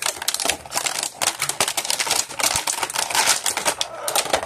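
Clear plastic toy packaging crackling and clicking rapidly as a figure is worked free of it by hand.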